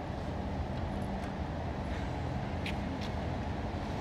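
City street ambience: a steady low rumble of road traffic with no voices.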